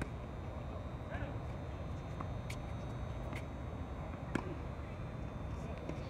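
Tennis racket strings hitting a tennis ball during a serve and rally: several sharp pops, the loudest about four seconds in, over a steady low outdoor rumble.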